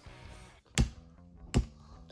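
Two sharp knocks of a small plastic toy pallet being struck while trying to snap it in half, the first just under a second in and the second near the end. Faint guitar background music plays underneath.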